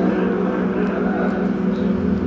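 A steady low drone of several held tones, unchanging in pitch and level.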